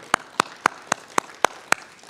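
Hand clapping in a steady rhythm of about four claps a second, seven claps in all, over fainter applause from a few others.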